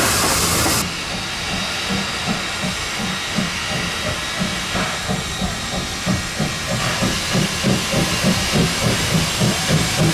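Steam tank locomotive hissing steam, then, after a cut, its exhaust chuffing as it works up the line pulling its carriages. The beats come faster and louder toward the end, about three a second, as it approaches.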